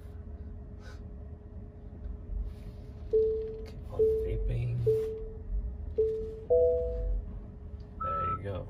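Tesla Model Y park assist chime beeping about once a second, then a higher two-note tone near the end. It warns of an obstacle close ahead as the car creeps toward the stop distance.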